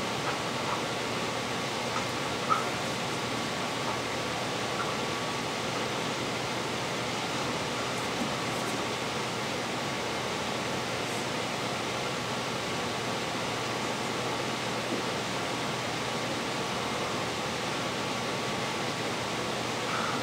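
Steady room noise: an even hiss with a faint hum running under it. There is one short click about two and a half seconds in.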